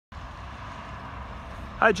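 Steady outdoor background noise with a low rumble and a light hiss, and no distinct events. Near the end a man says "Hi".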